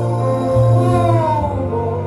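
A woman singing gospel through a microphone over live instrumental accompaniment with deep, sustained bass notes; her voice slides down in pitch about a second in.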